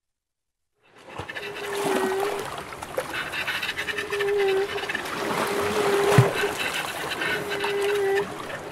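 Flute and violin improvising after a second of silence: short held notes at about the same pitch recur every one and a half to two seconds over a steady hiss full of small clicks, with a sharp knock about six seconds in.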